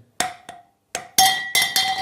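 Metal tube parts of an Ultimate Speed tire rack knocked a few times, each knock ringing with a clear metallic tone, the last and loudest ringing on for most of a second. The ring is what the owner takes as the sign that the parts are steel.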